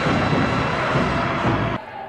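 Giant ape's roar from a monster-film soundtrack: one long, rough roar that cuts off shortly before the end.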